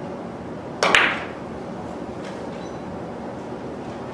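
Three-cushion billiards shot: a loud, sharp double click as the cue strikes the ball about a second in, then a couple of faint clicks as the balls meet.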